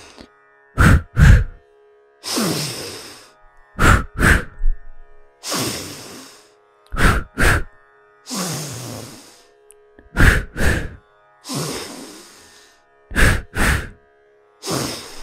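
Moksha Kriya yoga breathing: a long, strong inhale through the nose, then two sharp, forceful exhales through the mouth, repeating about every three seconds, with five double exhales in all. Soft background music with held tones runs underneath.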